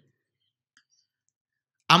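Near silence with one faint click about a second in, then a man's voice resumes speaking just before the end.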